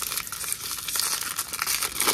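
Foil wrapper of a baseball card pack crinkling and tearing as it is pulled open by hand, a continuous crackle of many small crinkles.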